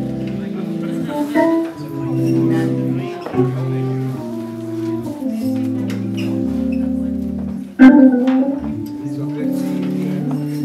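Hammond organ playing slow held chords over a bass line that steps from note to note, in a live jazz combo. There is one sharp, loud hit about eight seconds in.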